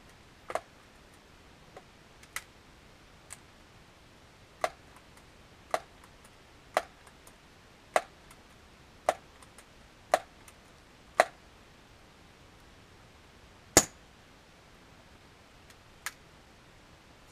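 Daisy PowerLine 901 multi-pump air rifle being pumped: about ten sharp clicks of the forearm pump lever at an even pace of roughly one a second, building air pressure for a shot. A little over two seconds after the last stroke comes a single louder, sharper click.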